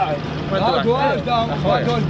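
Men talking in Arabic over a steady low hum from a running vehicle engine.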